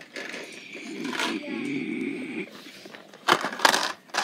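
Indistinct child vocal sounds and rustling, then two sharp knocks against the phone near the end as a hand touches it.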